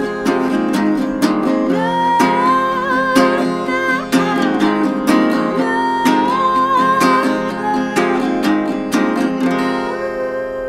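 A woman singing over a strummed acoustic guitar in a solo live performance, with the strums coming at a steady rhythm.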